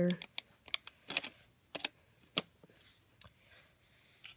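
Snap-circuit kit parts being pressed together and onto the clear plastic base grid: a handful of sharp plastic-and-metal clicks at uneven intervals as the motor and a wire piece are snapped into place.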